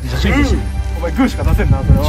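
Men's voices over background music.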